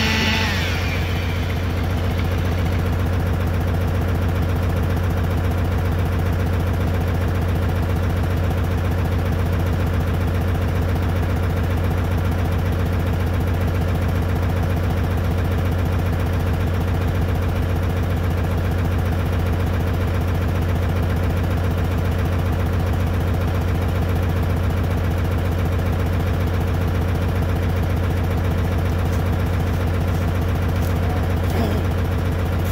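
An engine idling steadily, a loud, even, unchanging hum with no revs.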